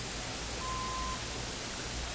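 Steady hiss and low hum of the recording's background noise, with one short faint beep a little over half a second in.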